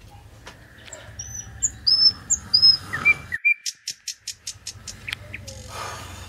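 Small birds chirping: a series of short, high chirps, then a quick, rapid run of sharp notes about three and a half seconds in, over a low steady hum.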